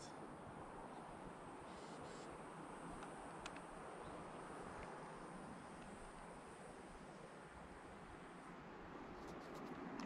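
Near silence: faint outdoor ambience, a soft even hiss with a couple of small ticks.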